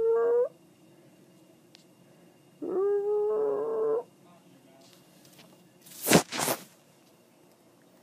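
Domestic tabby cat, high on catnip, meowing twice: a short meow right at the start and a longer, steadier one about three seconds in. About six seconds in come two short, sharp rushes of noise, louder than the meows.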